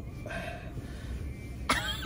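A person's short breathy sigh with a quiet "uh", then near the end a sudden loud burst of voice, a laugh or cough.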